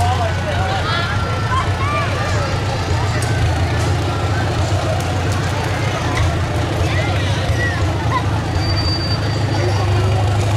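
Farmall tractor engine running steadily at low speed as it tows a parade float, with people's voices and calls over it.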